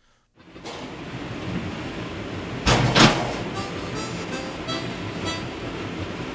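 Background music fading in over a low ambient hum, with two heavy thuds about a third of a second apart near the middle and short repeated high notes after them.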